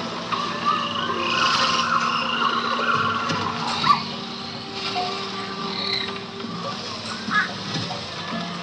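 A theme-park boat ride's recorded rainforest soundscape: frog-like croaking and rapid trilling calls with scattered higher chirps over a low steady hum. There is one sharp tick about four seconds in.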